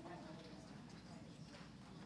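Near silence: faint room tone with distant, indistinct voices and a few soft clicks.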